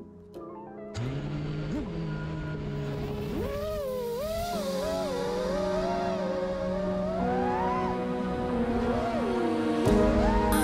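The motors of an iFlight Titan DC5 6S FPV freestyle quadcopter whine over background music. The motor pitch wavers up and down with the throttle and jumps sharply higher about three seconds in.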